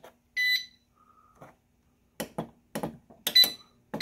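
Electric space heater's touch control panel beeping as its buttons are pressed: a short beep about half a second in, then a few button clicks and another beep near the end as it is set to low. A faint steady low hum runs underneath.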